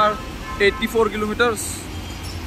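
A man speaking in short phrases over a steady low rumble of vehicle engines and traffic.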